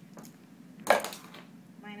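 A single sharp knock about a second in, with a short ring after it, as the syringe-pump tubing set is handled.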